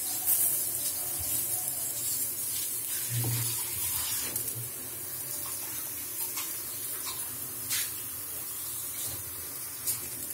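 Mutton-and-chana-dal shami kababs sizzling steadily as they shallow-fry in a little oil on a flat griddle, with a couple of light clicks near the end.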